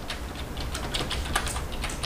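Light, scattered clicks and taps of thin metal strip dies being set down by hand on cardstock strips, with soft paper handling.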